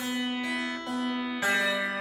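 Budget Strat-style electric guitar strings plucked twice, at the start and about one and a half seconds in, ringing with a buzzy, sitar-like jangle. It is the sign of a poor factory setup, with the strings buzzing and pinging at the nut.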